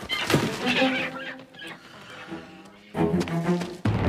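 Suspenseful background music. About three seconds in, a louder held chord comes in. Just before the end, a sudden deep hit starts a low rumbling swell.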